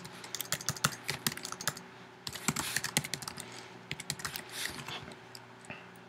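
Typing on a computer keyboard: a quick run of key clicks, a brief pause about two seconds in, then more keystrokes.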